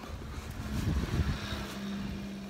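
A motor vehicle's engine running close by: a low rumble that swells about a second in, then settles into a steady low hum.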